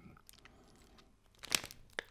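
Plastic chocolate-bar multipack wrapper crinkling in the hands: a short cluster of crackles about one and a half seconds in, after near quiet.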